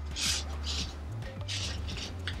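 Curtain-tape cords being pulled through the tape and the jersey fabric bunching up along them, heard as about three short rustling swishes, over quiet background music.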